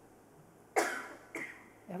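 A person coughing twice, two short sudden coughs about half a second apart, the first the louder.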